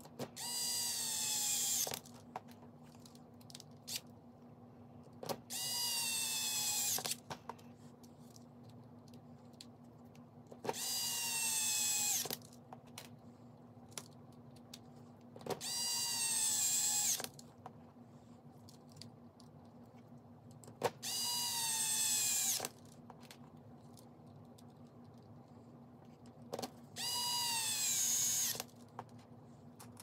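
Small cordless electric screwdriver running in six short bursts, each about a second and a half, its whine falling in pitch within each burst as it drives the bolts that hold an RC crawler's wheel and wheel adapter to the hub.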